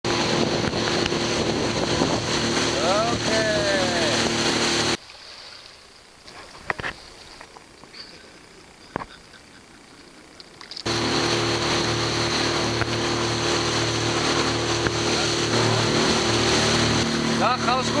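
A small 30 hp motorboat's engine running steadily under way, with rushing wind and water. About five seconds in it drops away for some six seconds to quieter surroundings with a few sharp clicks, then the steady engine returns.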